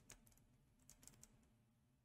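Near silence with a few faint computer keyboard clicks, a small cluster near the start and another about a second in.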